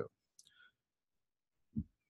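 Near-silent pause with a faint click about half a second in and one short, low thump near the end.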